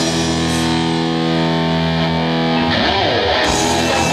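Distorted electric guitar through an Orange amp holding one sustained chord for nearly three seconds, then a quick slide down and back up in pitch. The fuller band sound, with cymbals, comes back in near the end.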